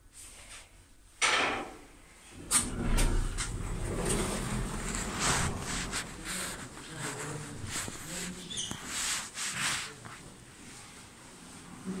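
Lift car doors sliding open about a second in, followed by footsteps, knocks and background voices as someone walks out of the lift.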